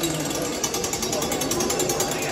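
Hand-turned wheel driving the gear train of an interactive display machine: the toothed gears clatter in a fast, steady rattle as the wheel is cranked.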